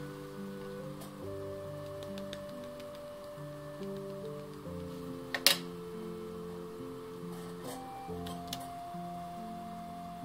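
Soft background music of slow, sustained notes. About halfway through comes one sharp click, followed later by a few faint ticks, as a clear acrylic stamping block is handled on the paper.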